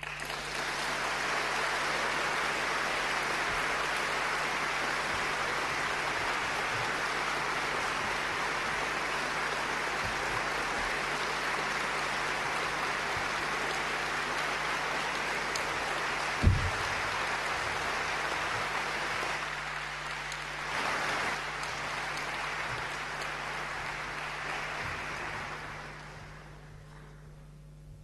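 Audience applauding steadily, swelling slightly near the end before fading out. One sharp low thump stands out about two-thirds of the way through.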